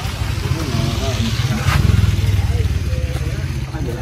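A motorbike engine running close by, a low rough rumble that swells to its loudest about two seconds in, under faint background talk.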